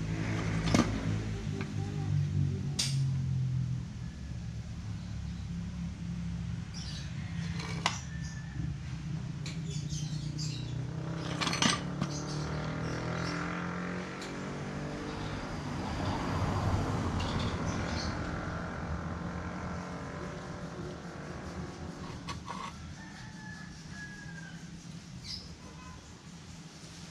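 Steady low hum of running vehicle engines that swells for a few seconds in the middle, with a few sharp metallic clicks from brake booster parts being handled and knocking together.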